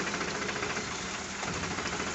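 A water tanker's engine running steadily, with water gushing from a hose and splashing into a concrete trough.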